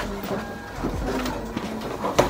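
Paper and cardboard handled: a warranty booklet and papers are pulled out of a laptop's cardboard box, giving a run of short rustles and scrapes.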